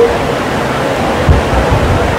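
Steady rushing hiss with no speech, joined by a low rumble about a second and a half in.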